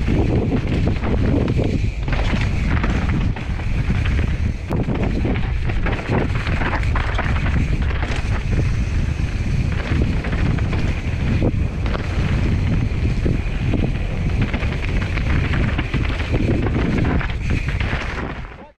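Mountain bike descending a rough dirt singletrack, its tyres, frame and drivetrain rattling over stones and roots in a stream of short knocks, under steady loud wind buffeting on the camera microphone.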